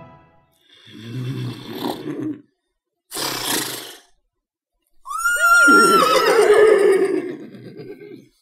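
Horse puppeteers voicing a horse: a low breathy sound, then a short sharp exhale, then a loud whinny that swoops up and down in pitch and trails off into a low rumble.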